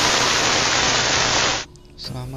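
A burst of steady white-noise static, a glitch-transition sound effect, that cuts off abruptly near the end.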